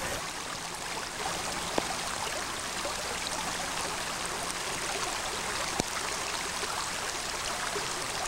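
Creek water running steadily, a continuous rushing noise, with two faint ticks about two and six seconds in.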